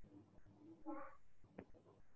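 Near silence, with one faint, short pitched sound about a second in and a faint click just after it.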